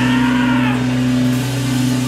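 Rock band playing live: a guitar and bass chord is held steady with no drum beats. The singer's voice glides over it in the first second or so.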